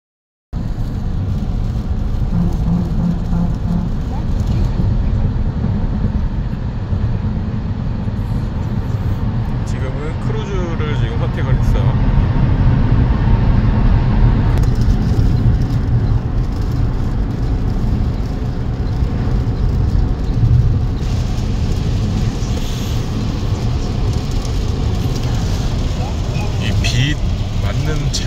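Road noise inside the cabin of a fifth-generation Toyota Prius hybrid at about 100 km/h on a wet highway: a steady low tyre and road rumble with rain on the car, starting about half a second in. The rain noise coming into the cabin is too much even with the windows closed.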